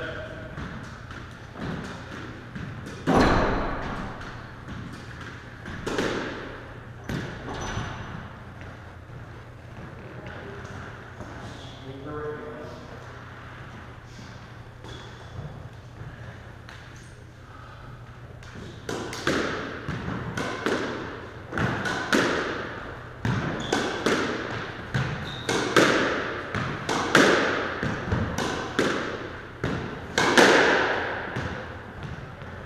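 Squash ball struck with a racket and hitting the court walls, each hit echoing in the enclosed court. A few scattered hits come in the first seconds, then a steady run of about one hit a second in the second half.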